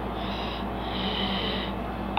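A person breathing twice close to the microphone, a short breath followed by a longer one, over a steady low background hum.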